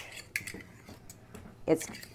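A table knife scraping and clicking against a small metal measuring spoon, several short sharp metal clicks with a brief scrape, as mustard is scraped off the spoon.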